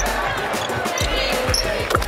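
Basketball dribbled on a hardwood court, with short high squeaks from players' sneakers, over steady background music.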